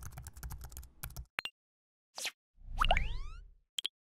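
Sound effects for an animated logo outro: a quick run of keyboard-typing clicks, a single click, a short whoosh, then a louder swell with rising sweeping tones and two short pops near the end.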